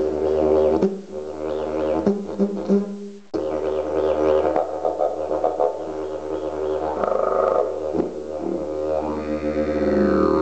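Termite-hollowed bloodwood eucalyptus didgeridoo playing a low drone with shifting overtones. The drone thins and breaks about a second in, then comes back strongly a little over three seconds in and holds to the end.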